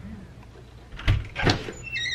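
A half-glazed exterior door being unlatched and pushed open: two knocks from the latch about a second in, then a short squeak near the end as it swings.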